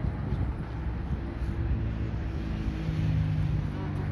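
A motor vehicle engine running, a steady hum that comes in about a second in over a constant low rumble.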